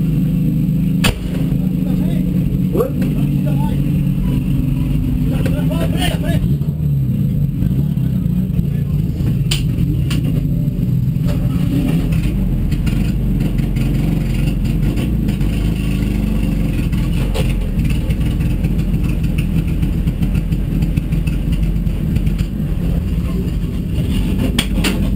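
Race car's engine running steadily at low revs, heard from inside the stripped, roll-caged cabin, with a few sharp clicks in the first half.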